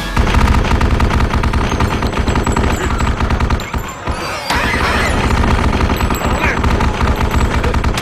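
Twin-barrelled mounted anti-aircraft gun firing long, very rapid bursts, with a short break about four seconds in. In the second half, high wavering shrieks of the creatures being shot rise over the gunfire.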